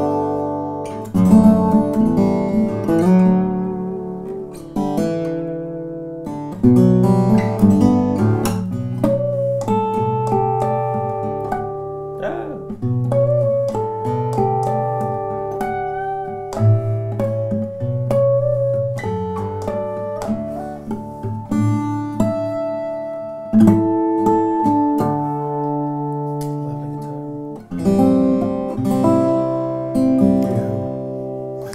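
Lowden S-model small-body acoustic guitar, short 630 mm scale, fingerpicked solo: a melodic passage of plucked single notes and chords left to ring, with some high bell-like notes partway through.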